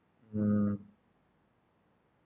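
A man's short, flat hummed filler sound, about half a second long, shortly after the start, with a faint mouse click during it; the rest is near silence.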